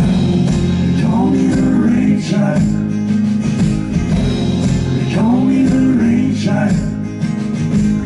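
Live band music led by an acoustic guitar, with a man singing two phrases, about one and five seconds in.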